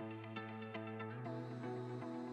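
Background music: plucked notes in a steady rhythm, about three a second, over a held bass note.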